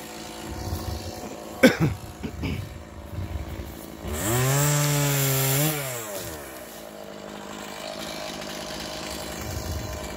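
Chainsaw idling, revved up once for about a second and a half around four seconds in, then dropping back to idle. A few sharp knocks sound near two seconds in.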